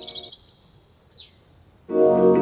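A break in a chillout track: the music drops away and a few high bird chirps ring out on their own, ending in a falling whistle. The full music comes back in just before the end.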